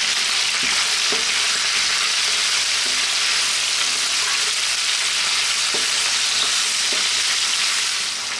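Chicken pieces, potatoes and onion sizzling steadily in a nonstick frying pan, with a wooden spatula scraping and knocking against the pan a few times as they are stirred.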